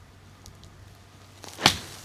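Golf club swung at a ball sitting on a sandy, leafy lie in the bush rough: a short rising swish, then one sharp strike about one and a half seconds in, as the clubhead takes the ball together with sand.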